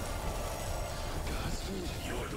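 Steady low rumbling sound effect of a speedster's lightning and motion blur. A man's brief pained voice comes in near the end.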